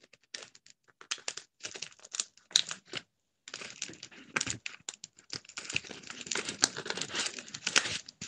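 Woven placemat rustling and crinkling as it is handled and folded into a fanned hat shape: irregular crackles and clicks, sparse at first and busier after a short pause a few seconds in.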